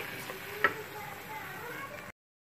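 Wooden spoon stirring a thick potato-and-eggplant curry in a wok, over a low sizzle from the hot pan, with one sharp knock under a second in.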